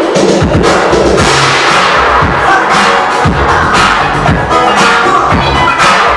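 Dance music for a popping battle, played loud over a sound system, with a heavy kick drum about once a second.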